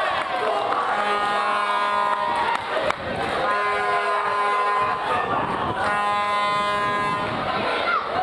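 Spectators' horns blowing three long held blasts, each lasting a second or more, over a steady crowd hubbub as a goal is celebrated.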